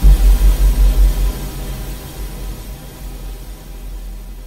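A sudden loud, deep rumble in an electroacoustic music piece, pulsing about five times a second for just over a second, then fading into a quieter, noisy rumble.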